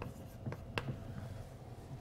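Chalk tapping and scraping on a blackboard as an equation is written: a few short, sharp taps in the first second or so.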